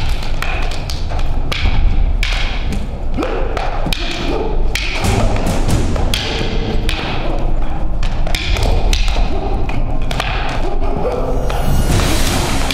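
Rattan escrima sticks clacking against each other in rapid, irregular strikes, several a second, as two fighters trade blows.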